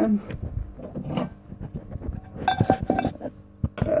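A scattering of light knocks and clinks from objects being handled, with a brief quieter stretch shortly before the end.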